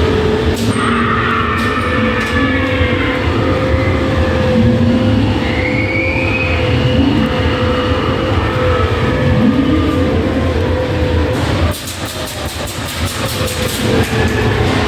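Fairground dark-ride car rolling along its track in the dark: a steady rumble with a continuous hum over it. About 12 s in the rumble drops and gives way to rapid clicking.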